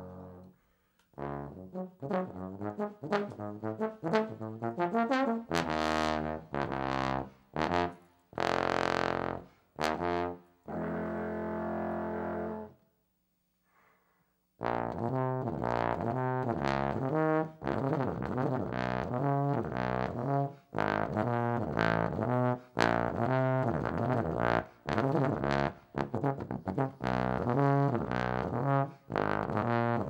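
Trombone playing a line of separate notes. It stops for a moment about halfway through, then comes back in with a faster, rhythmic riff.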